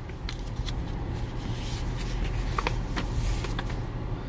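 Pages of a comic book being turned and handled by hand: soft paper rustling with a few faint ticks, over a steady low hum in the car.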